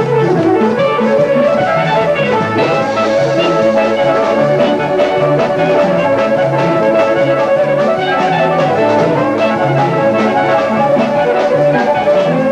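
Live folk ceilidh band playing a fast dance tune: fiddles, melodeon, piano, guitars, bass and drums over a steady beat. A long high note is held from about three seconds in.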